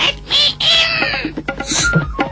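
Cartoon parrot squawking: one long call that falls in pitch, then a shorter, higher squawk near the end, over background music.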